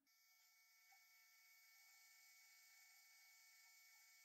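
Near silence: a very faint steady hiss with faint steady hum tones.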